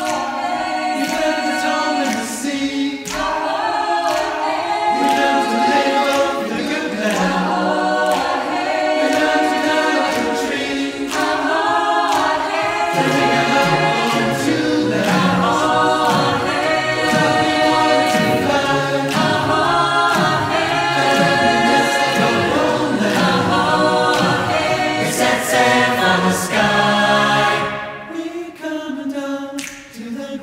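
Mixed choir singing an a cappella jazz arrangement in several parts, with vocal percussion adding short sharp hits that keep the beat.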